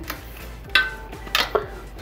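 Light metallic clinks of a steel hex wrench against a bicycle front derailleur as it is fitted into the cable clamp bolt: two sharp clinks, about three-quarters of a second in and again about half a second later, the first with a brief ring.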